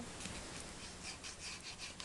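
Faint, quick scratching strokes, about five or six a second, of a hand-held object being rubbed over cardstock to press down a freshly glued paper layer.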